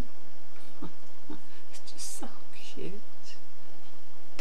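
A woman's soft, wordless murmurs and breathy vocal sounds, four short ones that bend up and down in pitch, with brief crinkly rustles of a sheer organza bag being handled.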